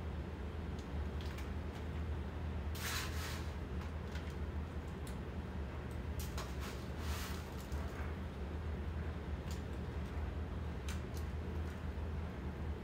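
Soft, scattered rustles as shredded cheese is sprinkled by hand onto a foil-lined casserole pan, over a steady low hum in the room.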